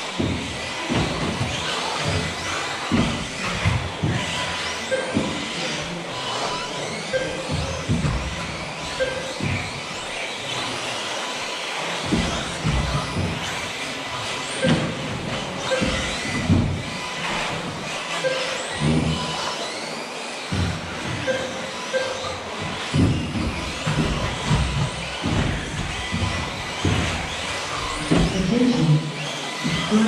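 Electric 1/10 scale 2WD off-road RC buggies racing on an astroturf track: their motors whine up and down as they accelerate and brake, with frequent knocks from the cars striking the track borders and landing. Music plays in the background, and short repeated beeps sound through it.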